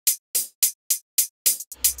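Electronic hi-hat part of a dance track, played back on its own: short, crisp, high-pitched hits about three a second. A deeper sound joins near the end.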